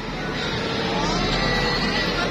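Battery-powered children's ride-on toy motorbike playing its engine sound effect: a steady engine-like noise from its small built-in speaker, with a faint voice in the background.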